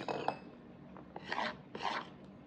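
Metal spoon scraping into a frozen ice cream cake: two short scraping strokes a little over a second in, after a brief sound at the start.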